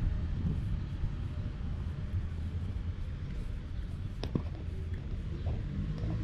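Street traffic: a steady low rumble of cars passing on the road, with one short click a little after four seconds in.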